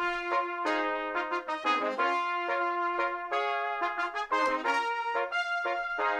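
Cornet section of a brass band playing on its own, several cornets sounding held notes together in harmony, the chords changing every second or so.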